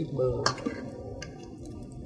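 Scallion oil sauce being poured from a stainless steel bowl onto a metal tray of food, with a sharp metal click about half a second in.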